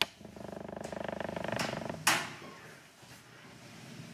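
Sliding chalkboard panels being moved: a rapid, rattling rumble for about two seconds as the board runs in its frame, ending in a sharp knock as it stops.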